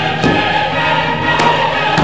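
Choral music with held notes, with two short thumps, one just after the start and one about a second and a half in.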